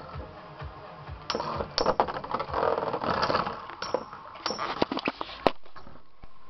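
Two metal Beyblade spinning tops, Blitz Striker and Gravity Destroyer, whirring and clashing in a plastic BeyStadium, with repeated sharp metallic clacks as they collide. The hardest hit comes about five and a half seconds in.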